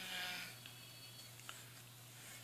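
A short, faint hum from a person's closed mouth, about half a second long, at the start, then a small click about halfway, all over a steady low hum.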